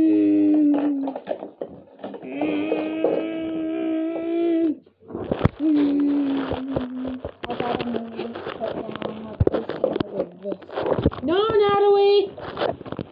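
A child's voice making long, held race-car engine noises, steady hums that glide up in pitch near the end, without words. Scattered clicks and knocks come from plastic toy cars being handled on the floor in the second half.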